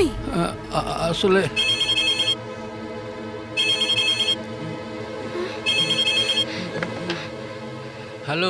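Mobile phone ringing: three identical electronic rings, each under a second long, about two seconds apart.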